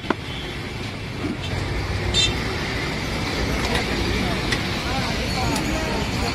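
Street traffic noise: a steady rumble with indistinct voices in the background, and a short sharp sound about two seconds in.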